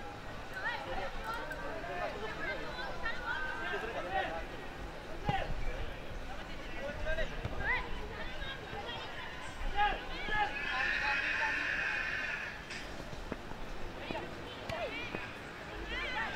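Distant shouts and calls from youth football players and people around an open pitch, scattered and overlapping. About ten seconds in, a dense, shrill burst lasts roughly two seconds.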